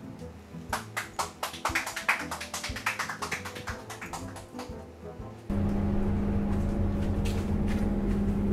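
Background music with busy, clicking percussion. About five and a half seconds in it cuts off abruptly, replaced by the loud, steady hum and low rumble of a city bus running, heard from inside the cabin.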